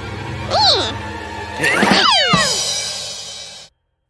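Cartoon cat meows over background music: one arching call about half a second in, then a longer call falling in pitch around two seconds in. The music fades and cuts to silence shortly before the end.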